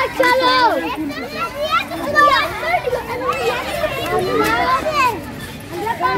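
Children playing in a playground, with high voices shouting and calling over one another.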